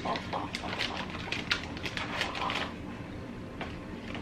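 Plastic MRE pouch and its heater bag crinkling and rustling in the hands as the hot pouch is pulled out. It is a quick run of crackles that thins out after about two and a half seconds.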